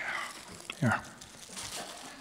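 Faint crinkling and rustling of a plastic snack-cake wrapper being handled, with a short spoken "yeah" about a second in.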